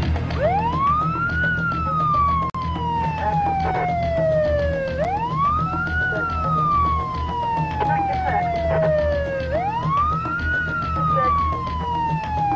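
Police siren wailing in three slow cycles, each rising quickly in pitch and then falling slowly over about four seconds, with a steady low rumble underneath.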